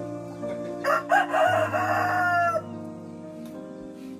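A rooster crows once, a single call of about two seconds, over steady background music.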